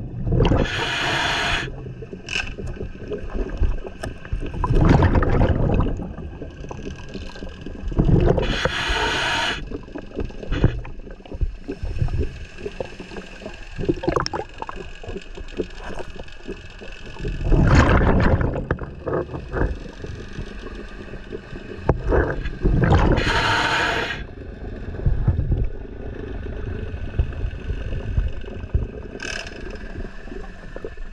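Scuba diver breathing through a regulator underwater: a hissing inhale and a rush of exhaled bubbles every few seconds, over a steady low rumble of moving water.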